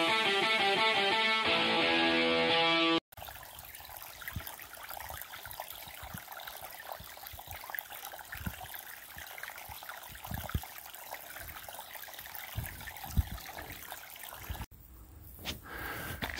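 Guitar music for about the first three seconds, cutting off suddenly. Then a small creek trickles quietly, with a few scattered low thumps.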